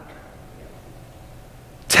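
Faint, steady room tone with no distinct sound in it, then a man's voice starts speaking near the end.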